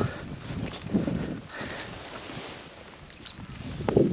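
Wind buffeting the microphone: an uneven rumbling gusting that eases off towards the end.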